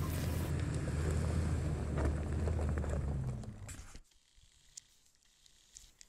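Toyota pickup truck running on a gravel track: a steady low rumble with hiss that dies away about two-thirds of the way through, followed by near silence.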